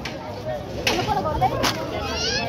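Two sharp cracks, about a second in and again near the end, over the chatter of a crowd.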